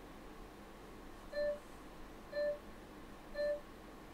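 Three short electronic beeps, evenly one second apart, from a gesture-drawing session timer counting down the end of a timed pose.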